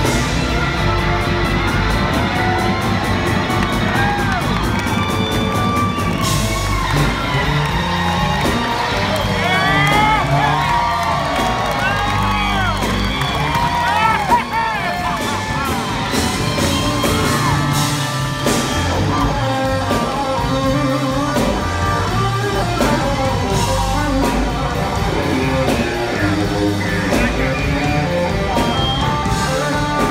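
A live electric blues band playing loud: electric guitar lead with bent, sliding notes over keyboard, bass and drums, with shouts from the audience.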